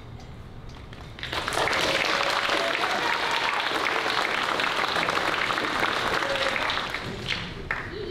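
Audience applauding, the clapping starting about a second in and dying away about seven seconds in, with a few voices mixed in.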